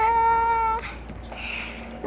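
A young boy's voice drawing out one long high note that slides up at the start and holds for about a second, sung or mewed like a cat, followed by a soft breathy noise.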